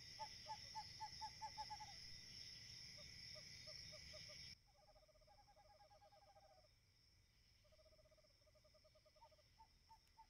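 Faint night-woods ambience: rapid trains of short, pitched hoot-like calls, several a second, repeating in runs. A steady high insect-like drone runs under them and cuts off abruptly about four and a half seconds in, leaving the calls alone.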